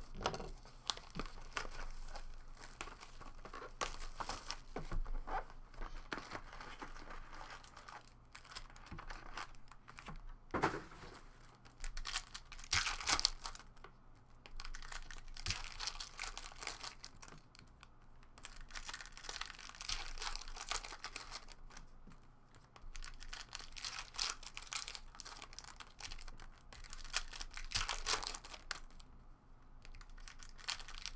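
Trading card packs and their plastic wrapping being torn open and crinkled by hand, an irregular crackling with many small clicks and a few louder tearing bursts.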